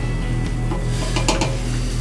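A cooking utensil scraping and clinking against a skillet a few times a little past the middle, over steady background music.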